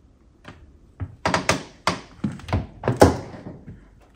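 A quick, irregular run of knocks and thuds, about half a dozen, starting about a second in, the loudest near the end.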